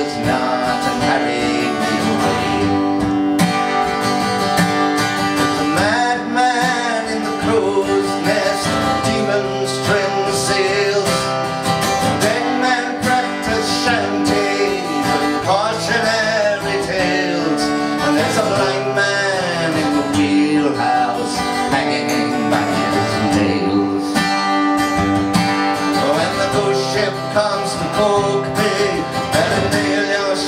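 Live acoustic guitar music with a melodic lead line that slides up and down in pitch over the strummed accompaniment.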